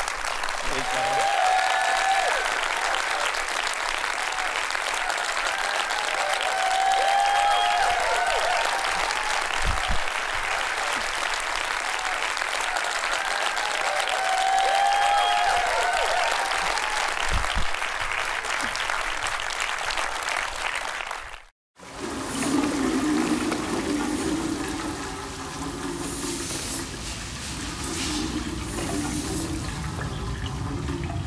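Theatre audience applauding steadily, with a few cheers rising over it, for about twenty seconds. It cuts off suddenly and gives way to water washing and sloshing across a tiled floor, with scrubbing.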